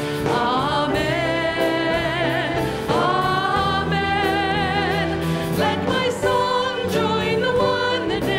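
Live worship band playing a song: women's voices singing held notes with vibrato over a full band backing.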